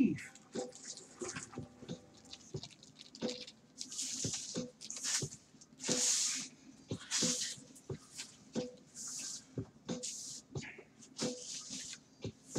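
Trading cards and a clear plastic card holder handled with gloved hands: a steady run of small irregular clicks and taps, with short sliding swishes about once a second, as a card is slipped into the holder.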